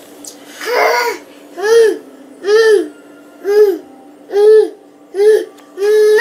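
A toddler vocalizing in a string of short, loud calls that each rise and fall in pitch, about one a second, seven in all.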